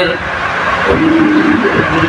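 Loud, even rushing noise for about two seconds, with a short bit of a man's voice about a second in.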